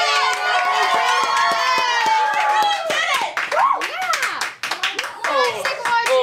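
Two girls cheering excitedly together, the first cheer drawn out for about two and a half seconds, with hand clapping, then breaking into shorter excited shouts.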